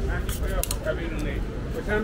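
Passers-by talking on a busy city sidewalk, over a steady low rumble of street noise.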